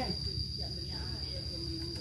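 Steady high-pitched insect drone: one unbroken, shrill tone.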